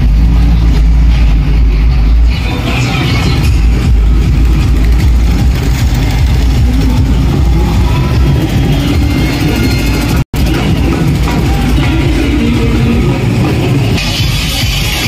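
Loud street-procession din: bass-heavy music from a loudspeaker system, with the heavy bass easing after about two seconds into a dense noisy mix of music and running vehicle engines. The sound cuts out for an instant about three quarters of the way through.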